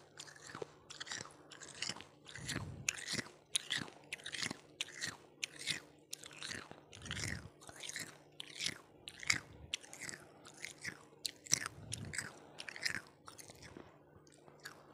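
A person chewing ice, crunching it between the teeth in quick, repeated bites, about two crunches a second.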